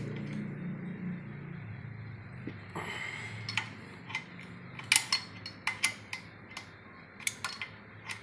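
Irregular metallic clinks and ticks of a wrench and socket working on the timing belt tensioner bolt as it is tightened, with a short scraping rasp about three seconds in.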